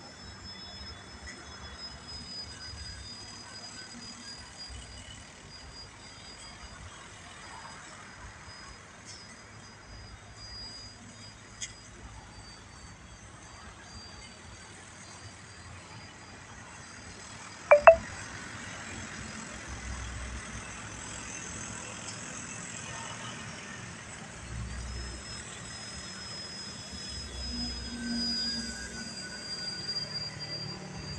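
Radio-controlled aerobatic Extra model plane flying overhead: a thin, high propeller-and-motor whine whose pitch follows the throttle, dropping about 12 seconds in and stepping up again near 25 seconds, with a low rumble in patches. A short, sharp sound about 18 seconds in is the loudest moment.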